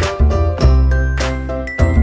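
Background music: a melody of sharply struck notes, a new one about every half second, over a low bass line.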